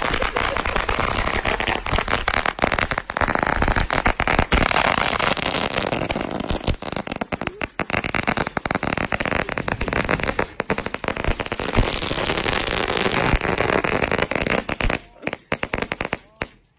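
A long string of firecrackers going off on the ground: a rapid, unbroken run of sharp cracks that goes on for about fifteen seconds, then thins out and stops just before the end.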